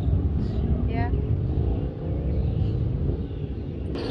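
Outdoor street ambience: a steady low rumble with a few faint voices in the background.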